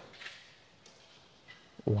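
Near silence in a pause between speech, then a man's voice saying "wow" at the very end.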